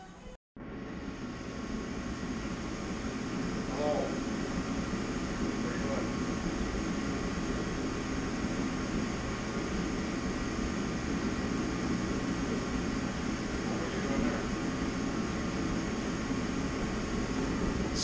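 A steady mechanical hum, even and unchanging, with a few faint snatches of distant talk.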